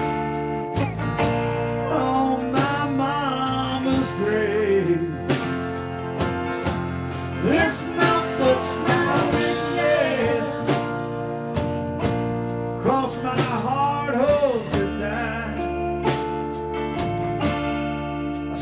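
Live blues-rock band playing an instrumental break, with a lead electric guitar bending notes over bass guitar, drums and rhythm guitar.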